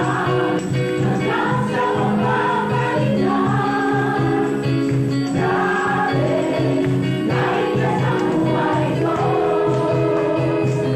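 Women's gospel choir singing through microphones over instrumental accompaniment with a steady, pulsing bass line.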